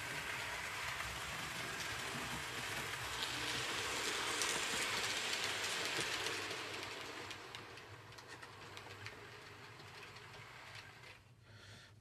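OO gauge model trains running along the track into the station, a steady rattle of wheels and motors that fades away over the last few seconds as the trains slow and stop at the platforms.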